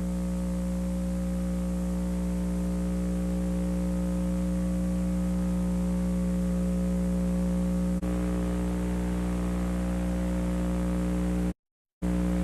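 Steady electrical hum with several pitched overtones under a layer of hiss, with no programme sound; a tiny click about eight seconds in and a brief dropout to silence just before the end.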